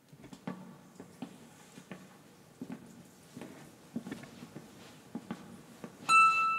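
Quiet hall with a seated audience: scattered faint soft knocks and rustles over a low murmur.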